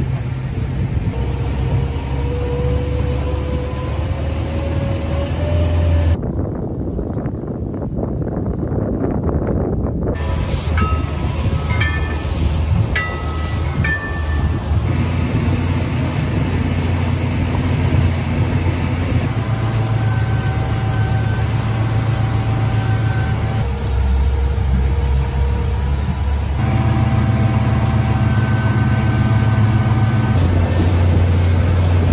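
Twin outboard motors running under way, a steady low drone with wind and water noise; the engine pitch rises slowly over the first few seconds, and the sound shifts abruptly several times.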